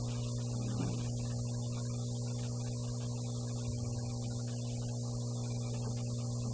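Steady electrical mains hum: a low, even hum with a series of higher overtones, picked up through the microphone and sound system.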